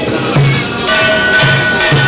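Temple procession percussion: a hand-held bronze gong struck about a second in and ringing with a steady tone, over repeated beats of a large drum and crashes of metal percussion.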